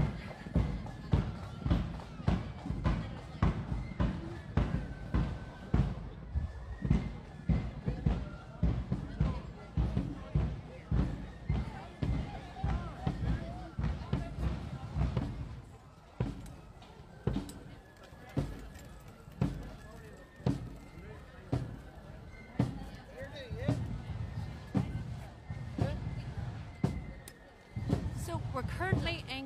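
A marching band's bass drum beating a steady march at about two beats a second, with faint high melody notes above it.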